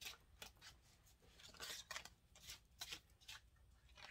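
Faint, irregular swishes and soft taps of a tarot deck being shuffled by hand.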